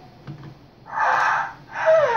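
A short, loud, breathy gasp about a second in, then a voice starting up near the end.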